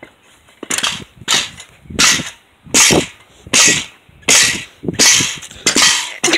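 Pogo stick bouncing on a concrete driveway: about eight landings at a steady rhythm, roughly one every three-quarters of a second, each a sharp hit.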